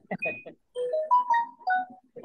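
A brief bit of speech, then a short melody of held notes that step up and back down, each lasting a fraction of a second.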